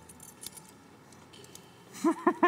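Handcuffs clinking faintly as they are fastened onto a pair of wrists: a few light metallic clicks and rattles, mostly in the first half second and again near the end.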